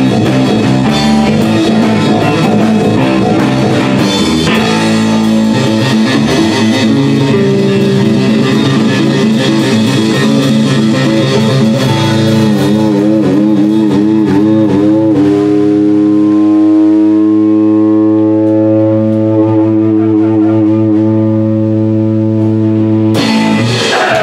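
Live rock band with electric guitars and drum kit playing loudly. After about fifteen seconds the drums drop away and the guitars hold long ringing chords, with a loud fresh hit about a second before the end.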